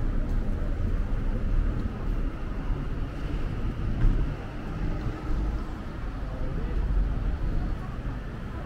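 Street traffic on a multi-lane city road, a steady low rumble of passing cars, with a brief thump about halfway through.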